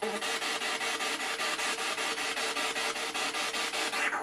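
A steady, rhythmic rasping noise pulsing about six or seven times a second, which starts and stops abruptly.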